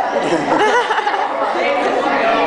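Several people's voices overlapping in chatter that echoes in a large hall; no single voice stands out clearly.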